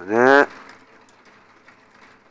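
A man's voice says a short final syllable in Japanese at the start. After that there is only quiet background with a few faint ticks.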